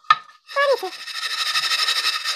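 Rapid, steady scrubbing of the underside of a frying pan coated in cleaning paste. It starts about a second in and carries on.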